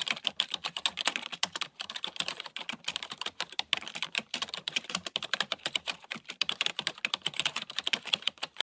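Computer keyboard typing: a fast, continuous run of key clicks as questions are typed into a chat box.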